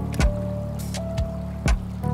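Lo-fi music: a slow beat of drum hits under sustained keyboard chords and a held melody note, with a water sound mixed in.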